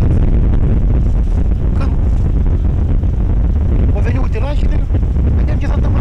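Wind buffeting the microphone: a loud, steady low rumble, with a man's voice heard faintly through it about four seconds in.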